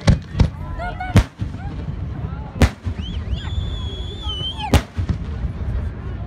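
Aerial fireworks going off: five sharp bangs of shells bursting, spaced irregularly over about five seconds, above a steady low rumble. A high steady whistle holds for about a second and a half and is cut off by the last bang.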